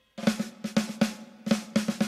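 Music: a drum-kit fill of quick snare and bass-drum hits, starting right after a brief silence.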